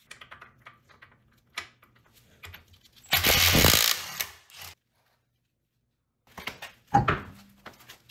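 Cordless impact wrench runs for about a second, breaking loose the wheel-lock lug nut through its key socket. Near the end come several knocks and one sharp clunk as the wheel comes off the hub.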